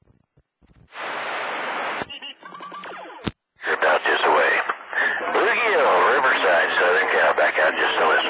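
CB radio receiving on channel 28: the signal drops out to near silence, a burst of static hiss comes about a second in, and a sharp click follows near the middle. From about three and a half seconds in, a garbled voice transmission comes through over static.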